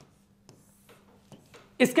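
A few faint taps and light scrapes of a pen on a touchscreen display as a line is drawn under the text.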